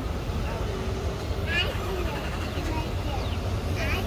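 Outdoor parking-lot ambience: a steady low rumble with faint, distant voices, and two brief high chirps, one near the middle and one near the end.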